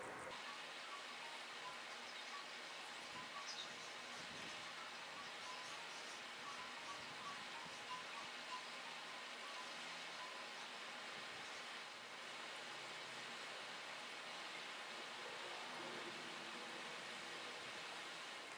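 Faint steady hiss of room tone and recording noise, with a few faint soft ticks.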